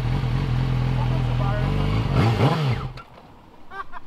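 Sport motorcycle engine running steadily, then revved once, its pitch rising and falling about two seconds in. The engine sound cuts off suddenly about three seconds in.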